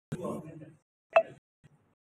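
A man speaking through a podium microphone in short broken phrases, with one sharp loud pop about a second in, the loudest sound here.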